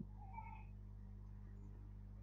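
Faint steady low hum with a brief, faint high-pitched call or squeak about half a second in.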